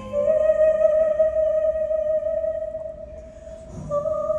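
A female singer holding one long, high sustained note over quiet piano accompaniment, fading a little before a new note starts at the very end.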